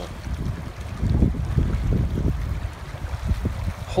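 Shallow, fast river running over a rippling riffle, with wind buffeting the microphone in uneven low gusts.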